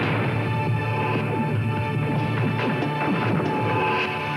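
Sampler-keyboard music built from recorded sounds of the Golden Gate Bridge's cables and guardrail. Many short, falling struck notes play over a steady low hum, with a tone near the middle that comes and goes.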